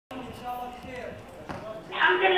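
Quiet speech in a hall, with one sharp knock about one and a half seconds in.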